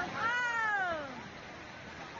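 A single high, drawn-out cry lasting about a second that slides steadily down in pitch.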